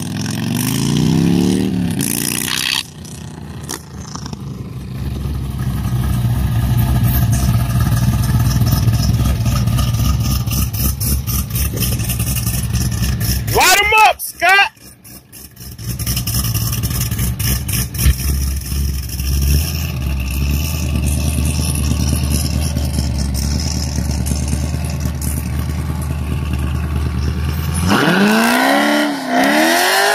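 A motorcycle engine accelerating away at the start, then a Chevrolet Corvette's V8 engine running with a steady low drone. It is blipped sharply once about halfway and revs up and down near the end as the car drives off.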